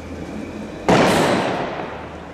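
A single loud blast about a second in, echoing off the surrounding buildings and fading away over about a second.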